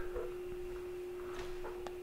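A single steady pure tone at a middle pitch, held without wavering or fading.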